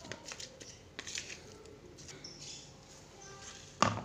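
Metal spoon scraping and tapping against a plastic bowl as crumbled tofu with salt is mashed and stirred, in small irregular clicks, with a sharper knock near the end.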